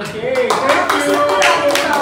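A few people clapping their hands in an irregular patter, with voices talking over the claps.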